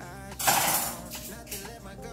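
A short clatter of small hard objects being picked up off a stone countertop, about half a second in.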